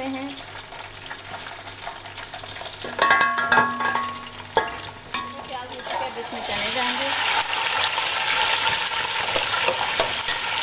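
Onions and whole spices frying in hot oil in an aluminium pot, with a metal spoon stirring and knocking against the pot a few times around three to five seconds in. About six seconds in, boiled chickpeas go into the oil and the sizzling turns much louder and steadier.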